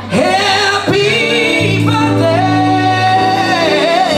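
Singing with musical accompaniment, the voice holding one long high note through the second half.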